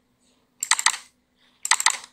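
Computer keyboard typing: two quick bursts of keystrokes about a second apart, as a chamfer distance value is keyed into a field.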